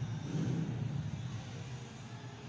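A motor vehicle's engine running with a low hum that fades over the second half.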